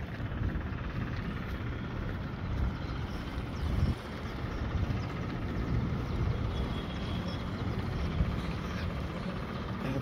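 Outdoor ambience: a steady low rumble of wind on the phone's microphone mixed with distant city traffic.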